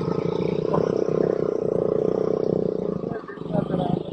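Motorcycle engine running steadily under way, a continuous drone from the bike being ridden, easing off slightly after about three seconds.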